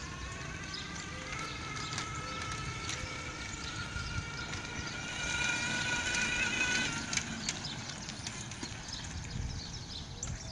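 Electric drive motor of a solar-electric reverse trike whining as it rides past, the whine rising slowly in pitch, loudest about five to seven seconds in and cutting off suddenly near seven seconds in. Scattered light clicks run alongside it.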